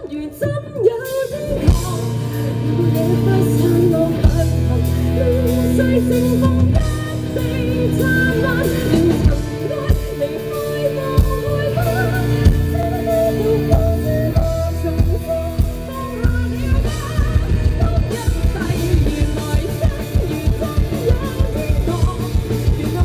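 Live rock band playing: a woman singing lead over electric guitars, bass guitar and a drum kit. The band drops out briefly right at the start and comes back in about a second in.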